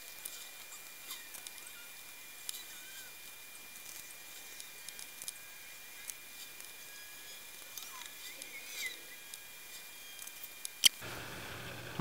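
Faint, sparse small clicks and scratches of jumper wires being pushed into a solderless breadboard, over a faint steady high whine. One sharp click comes about 11 seconds in.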